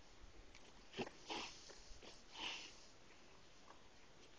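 A miniature pony sniffing at close range: three short, breathy sniffs, about a second in, just after, and again about halfway through.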